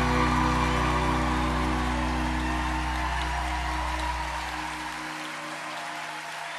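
A live band's closing chord rings on and slowly fades, its deep bass note stopping about five seconds in, under steady audience applause.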